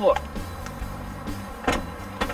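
Trunk lid of a 2011 Infiniti M37X unlatching and lifting open, with a single sharp clunk about 1.7 seconds in.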